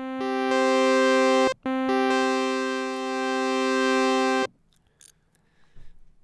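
Native Instruments FM8 software synth playing a sustained chord with a sawtooth waveform, bright and buzzy. The chord is played twice: the first time is held about a second and a half, with its notes coming in one after another. After a brief break, the second is held about three seconds, then it stops.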